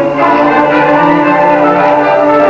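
Junior high school band playing, holding sustained chords.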